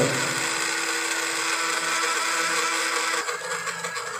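The small spindle motor of a TOYDIY 4-in-1 3D printer's CNC toolhead spins steadily with a whine as the carving job starts. About three seconds in, one of its tones stops and it gets a little quieter.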